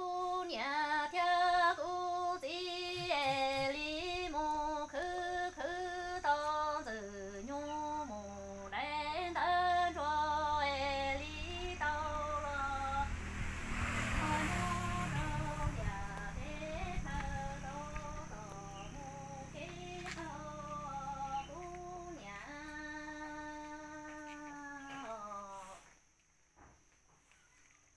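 A woman singing a Hmong kwv txhiaj ntsuag, an orphan's lament, solo in long phrases with sliding, wavering pitch, closing on a long held note near the end.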